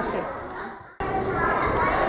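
Voices: the talk trails off and the sound cuts out about a second in. It then resumes with the background of a gymnasium, with children's voices in the distance.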